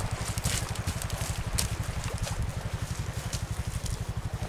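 ATV engine running at low speed, a steady fast low pulsing, with scattered sharp crackles over it.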